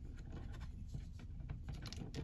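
Faint handling noise from a plastic action figure being gripped and turned by hand: light scratches and small clicks, a few more near the end.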